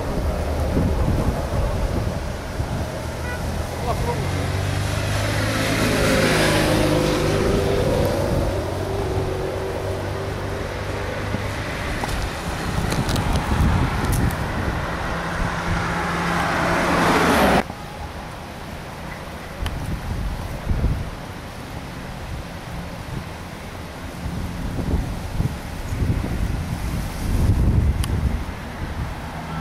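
Road traffic: cars passing close by, one sweeping past with a falling pitch about six seconds in, another building up until the sound cuts off abruptly about 17 seconds in. After that, quieter open-air background with scattered low bumps.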